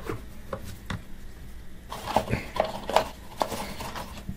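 Hard plastic clicks, knocks and rubbing as a GoPro in its cage is handled and fitted onto a helmet mount. A couple of single clicks come first, then a busier run of clicks and scraping about two seconds in.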